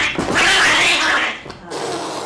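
A frightened kitten giving a loud, harsh defensive cry for about a second and a half while held down on its back, with a short weaker cry near the end.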